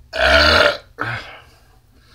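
A man's loud, deep burp lasting about half a second, then a shorter second burp just after, following a shot of vodka mixed with pop.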